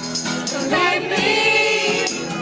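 Live acoustic song: strummed acoustic guitar with voices singing, one note held with vibrato for over a second in the second half.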